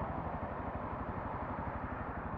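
Motorcycle engine idling, a steady low pulsing run at an even rate.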